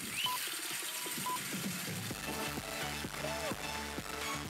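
Audience applauding after a talk, with a couple of short beeps in the first second or so. About two seconds in, background music with a steady beat starts under the applause.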